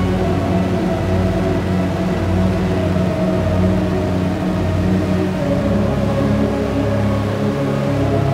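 Psychedelic dark ambient dungeon synth music: a low, throbbing synth drone under steady, held higher tones. A little past five seconds in, the bass notes shift to a new, deeper pitch.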